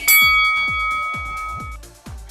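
A single bright bell-like chime rings at the start and fades over nearly two seconds, over electronic dance music with a steady kick-drum beat. The chime marks the start of a new 45-second exercise interval.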